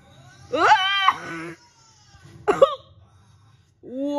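Wordless, pitched voice sounds in three bursts: a long one about half a second in, a short sharp one past the middle, and another starting near the end.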